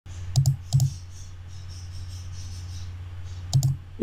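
Computer mouse clicked three times, each a sharp double tick of button press and release: two clicks close together near the start, a third about three seconds later, over a steady low hum.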